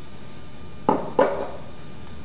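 Two short knocks about a third of a second apart, a glass olive oil bottle being set down on the countertop.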